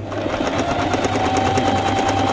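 Singer 8280 domestic sewing machine starting up and running at speed, stitching a zigzag picot (rolled) hem along the edge of the cloth. Its rapid, even needle strokes sit under a steady motor whine.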